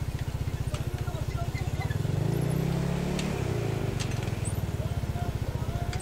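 A nearby engine idling with an even, low pulsing that swells briefly about two seconds in.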